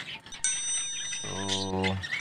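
Bell-like chime sound effect of a subscribe-button animation: a steady high ding that starts about half a second in and rings on to the end.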